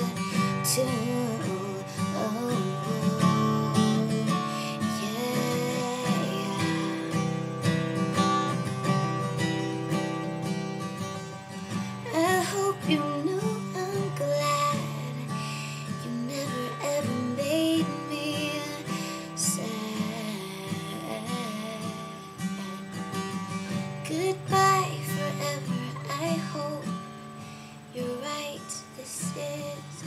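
Acoustic guitar strummed and picked in a slow song, with a young woman singing over it.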